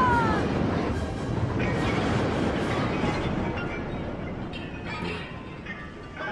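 Sound effect of a huge missile slamming into a starship's hull and coming to rest without exploding: a loud crash and rumble that slowly fades over several seconds, with scattered metallic clanks. A scream trails off at the very start.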